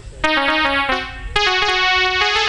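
A keyboard instrument plays an instrumental interlude between sung lines of an Alha folk ballad. Held single notes step through a melody from about a quarter second in, and the playing turns fuller and louder about a second later.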